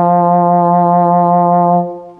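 Bass trombone holding one long note with a fast jaw vibrato, the quick kind heard from British euphonium players. The note stops shortly before the end and rings on briefly in the hall.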